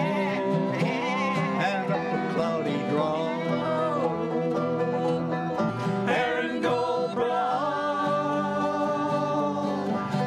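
Acoustic folk band playing a country-style tune on banjo, guitar, bass and fiddle, with singing, in a steady rhythm; long held notes come in about halfway through.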